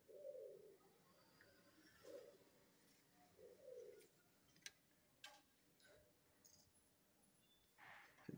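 Faint cooing of a dove: three short, low coos in the first four seconds, followed by two light clicks a little after the middle.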